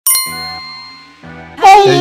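A bright, bell-like ding right at the start, its ringing fading over about a second, with a few soft low music notes under it. Near the end a loud voice starts speaking.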